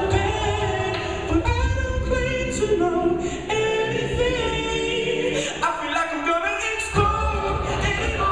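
Co-ed a cappella group singing a pop arrangement, with a male lead voice over backing harmonies and a low vocal-percussion beat. The low beat drops out for about a second near six seconds in, then comes back.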